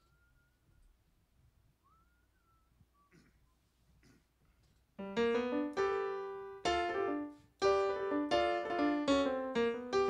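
Stage keyboard with a piano sound starting the intro of a blues number about halfway through: a run of chords, each ringing on for a moment, after a very quiet first half.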